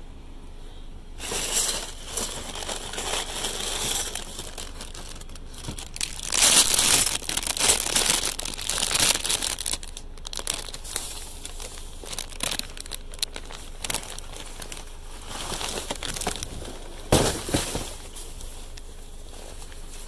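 Plastic bags and cardboard crinkling and rustling as a hand rummages through boxes of discarded goods in a dumpster, in uneven bursts. The loudest handling comes about a third of the way in, and there is one sharp crackle near the end.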